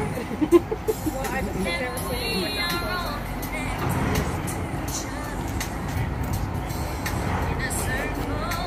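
Steady low rumble of a ferryboat's engine under wind on the microphone, with people talking around it and a few brief thumps about half a second in.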